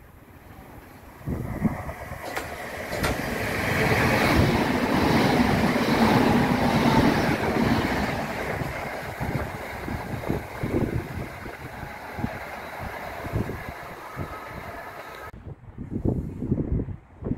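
Southern electric multiple-unit train running through the station. Its sound builds from about a second in, is loudest about four to eight seconds in, then fades. Wind buffets the microphone.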